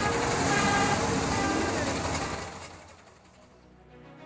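Steady rushing noise of an outdoor phone recording, with faint voices in it, dropping away about two and a half seconds in.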